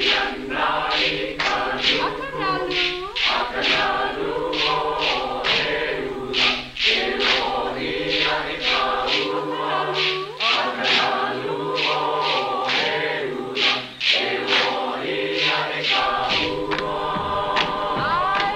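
A group of voices chanting a Hawaiian mele in unison for hula, over a steady beat of sharp percussive strikes, a little over two a second.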